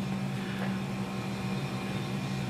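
A steady low hum in the room, several pitches held without change, over a faint even hiss.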